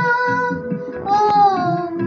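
A young girl singing, holding long notes, with a new phrase beginning about a second in, over a rhythmic instrumental backing.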